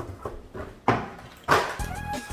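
Cardboard boxes and a plastic card tray being handled on a table, with two sharp knocks, about a second in and halfway through. Music begins near the end.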